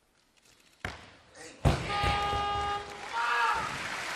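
A loaded competition barbell is dropped on a missed 132 kg snatch: a sharp knock about a second in, then a loud crash of bumper plates onto the lifting platform just before halfway. A steady held tone and a shout follow.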